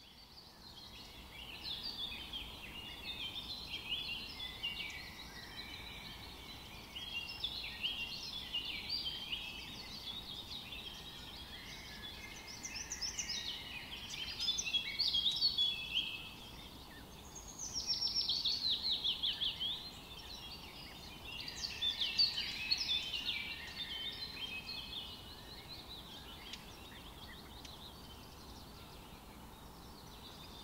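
Several small songbirds singing together, a busy overlapping run of high chirps and trills. There are louder phrases about halfway through, including a fast trill that steps down in pitch, and another near the end.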